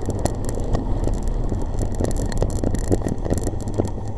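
Moving-bicycle noise on a handlebar-mounted camera: a steady low rumble with frequent clicks and rattles as the bike rides over the road, while a car passes close alongside.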